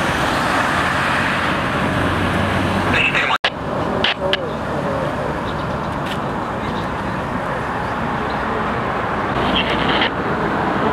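Street ambience: a steady hiss of road traffic from passing cars, with faint voices in the background. The sound drops out for an instant about three and a half seconds in.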